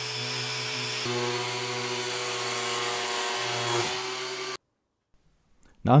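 Electric orbital sander running steadily on the pine frame, its hum shifting slightly about a second in. It cuts off abruptly after about four and a half seconds.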